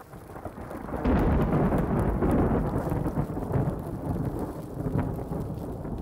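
Deep rumbling roar like thunder, swelling about a second in and holding on with a rolling, uneven level.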